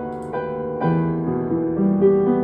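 Solo piano playing a Cantopop song arrangement, with new notes and chords struck about every half second and left ringing between them.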